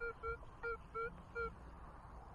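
Metal detector sounding five short, mid-pitched beeps as the coil sweeps back and forth over a buried target. This is the response to a mid-conductor target reading 25 on the display.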